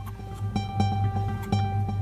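Background music: a plucked-string tune, with fresh notes struck about half a second and a second and a half in.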